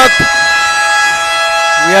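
Arena scoreboard horn sounding a long, steady tone to signal a timeout in a basketball game.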